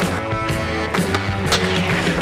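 Soundtrack music with a steady beat, about two beats a second.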